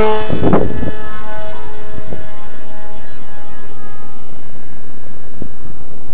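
Brushless electric motor and propeller of a foam RC pusher jet whining as it makes a fast, close pass: a loud rush about half a second in, then the whine fades as the plane flies away.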